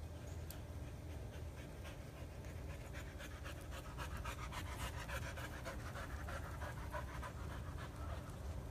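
A dog panting quickly, the rapid even breaths starting about three seconds in and running on to near the end.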